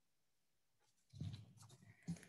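Near silence, broken about halfway through by a faint low sound.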